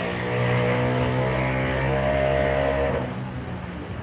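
A steady engine hum, typical of a motor vehicle running, that fades out about three seconds in.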